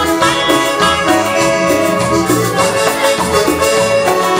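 Live Latin dance band playing, with sustained keyboard notes carrying the melody over a steady beat of drums and hand percussion.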